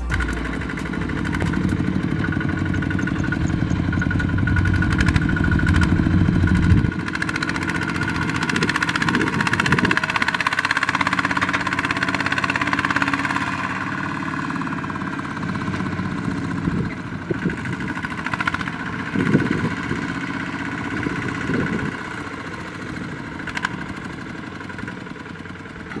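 Two-wheel walking tractor's single-cylinder diesel engine running steadily while it tows a trailer loaded with rice sacks. Its pitch and level shift now and then, and the deepest part of the sound drops away about seven seconds in.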